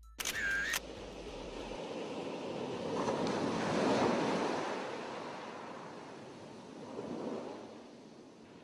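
Ocean waves washing in, swelling to a peak about halfway and a smaller swell near the end. It opens with a brief, bright sound effect.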